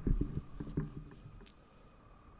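Muffled low rumbling and knocks with faint, indistinct voices in a large room, dying away about one and a half seconds in. A short sharp click follows, then quiet room tone.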